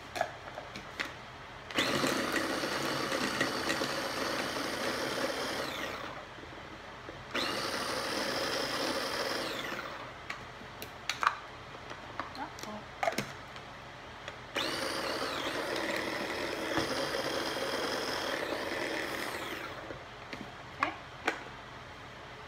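Small electric mini food chopper running in three bursts of a few seconds each, mincing apple chunks fine. Each burst winds up to speed and winds down again, with clicks and knocks of the plastic container and lid between runs.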